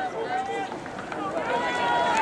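Scattered voices and shouts of spectators at an open-air stadium track, over a steady outdoor background hum.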